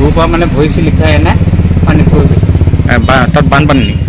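An engine running steadily with an even low pulse, under people's voices.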